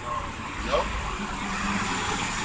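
A car going by on a city street, a steady low rumble of engine and tyres, with a brief hum about halfway through.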